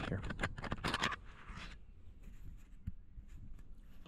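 Fingers handling an action camera right at its microphone. A quick run of clicks and scratches in the first second is followed by a short scraping rub, then faint scattered ticks as the camera is turned around.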